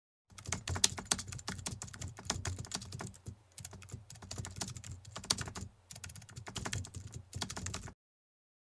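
Rapid computer-keyboard typing, a quick irregular run of key clicks, broken by two short pauses about three and a half and six seconds in.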